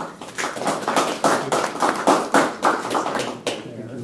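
Audience applauding, a dense patter of hand claps that thins out and fades near the end.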